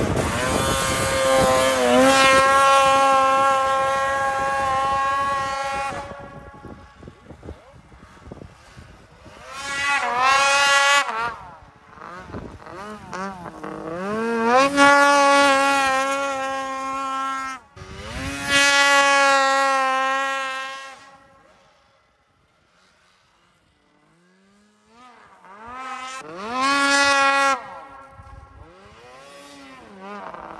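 Arctic Cat snowmobile's two-stroke engine revving hard in five separate runs. Each run climbs in pitch and then holds high before dropping off. Near the end it falls almost silent for a few seconds, then comes one more short run.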